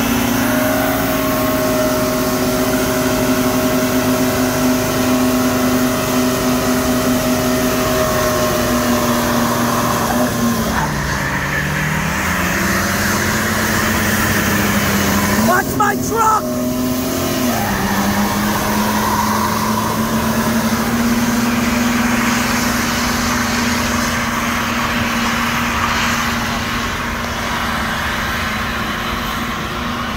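Dodge Dakota pickup's engine held at high revs in a burnout, its rear tire spinning on the asphalt. The revs sag about ten seconds in, drop off briefly around sixteen seconds, then climb back and hold steady.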